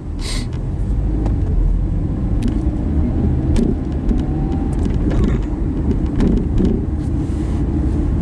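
Car driving, heard from inside the cabin: a steady low rumble of engine and road noise, with a few faint clicks scattered through it.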